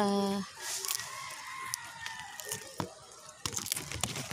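Monstera vine being pulled off a tree trunk, its clinging roots tearing from the bark in a few sharp snaps and rips, mostly in the last second or so.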